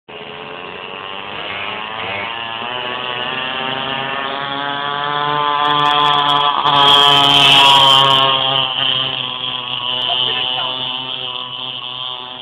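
Small single-cylinder engine of a homemade motorized pocket bike running at steady revs, growing louder as it comes closer. It is loudest a little past the middle, then fades as it goes away.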